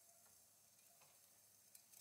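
Near silence, with a few faint, scattered ticks.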